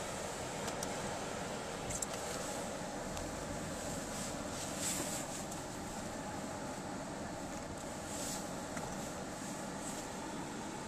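Car idling, heard from inside the cabin: a steady low hum with a few faint clicks.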